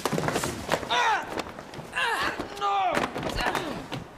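A short scuffle: several sharp yells and grunts of effort, with thuds and knocks as a man is thrown and pinned to the floor.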